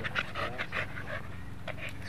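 Dogs panting rapidly in short, quick breaths during rough play-wrestling.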